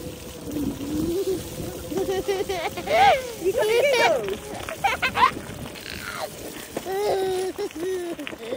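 A toddler laughing and squealing in several short, high-pitched bouts.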